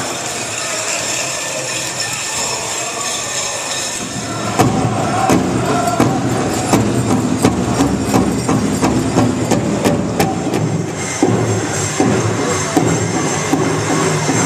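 Pow wow drum group: a large shared drum struck by several drummers in a steady, even beat with singers, coming in about four and a half seconds in over the hall's crowd murmur.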